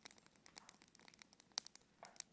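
Near silence with faint, scattered crackles and clicks, a few slightly stronger ones about one and a half seconds in.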